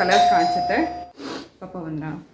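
An electronic doorbell rings with one steady held tone that stops about a second in.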